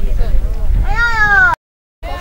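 Wind rumbling on the microphone. About a second in comes a high-pitched, drawn-out shout from a spectator cheering on a runner, falling in pitch at its end. The sound cuts off suddenly shortly before the end.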